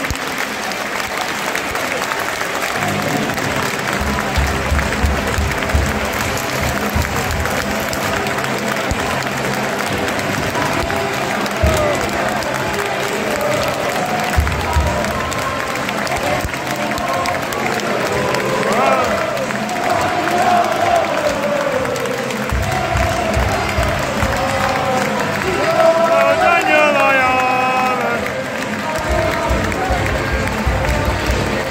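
Football stadium crowd applauding the players at full time, a steady clapping with crowd chatter, and music carrying across the ground in the second half.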